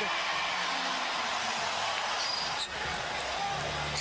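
Basketball arena crowd noise from a game broadcast, a steady wash of many voices, with a single sharp knock close to three seconds in.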